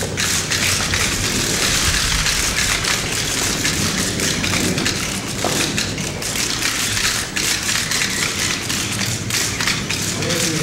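Rapid, overlapping clicks of many press photographers' camera shutters and motor drives, firing continuously.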